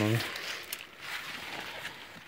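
A spoken word ends just at the start, then faint rustling of maize leaves being brushed and handled.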